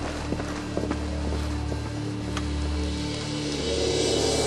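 Low, sustained dramatic background music with a steady drone, with a few faint footsteps over it.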